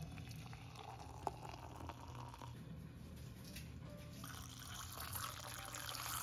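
Faint stream of liquid pouring into a metal mug onto matcha powder, the mixture frothing as it fills, with a single light tick about a second in.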